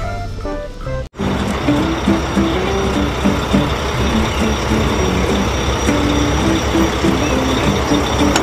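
A heavy tanker truck's engine running steadily, with a simple stepped melody of background music over it; the sound cuts in abruptly about a second in, after a short tail of music.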